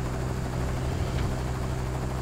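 Helicopter sound effect: a steady low rotor and engine drone, as of a helicopter hovering overhead.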